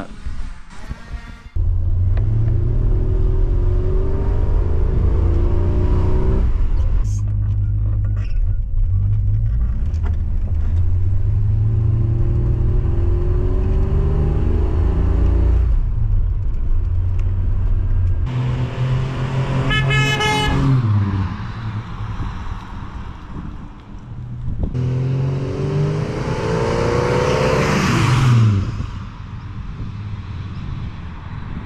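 Holden Torana's engine pulling away and accelerating through the gears, the revs rising and dropping back at each shift. Near the end it revs up hard to its loudest as the car passes close, then falls away.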